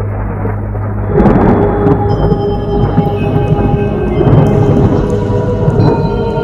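Thunderstorm sound effect: a loud rumble of thunder breaks in about a second in, with rain, over steady-toned background music.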